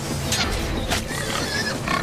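Wild boar grunting and squealing as it charges through tall crops, with two sharp cracks in the first second.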